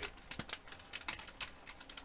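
Stiff plastic soft-bait package being handled as a soft jerkbait is slipped back inside it: a string of short, irregular crackling clicks.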